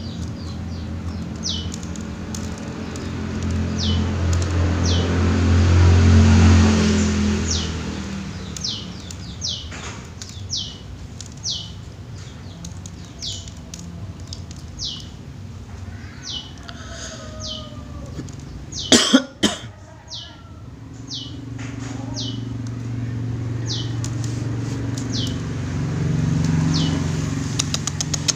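A small bird chirping over and over: short, high chirps that slide downward, about one a second. A low rumble like passing traffic swells and fades twice underneath, and a couple of sharp knocks come about two-thirds of the way through.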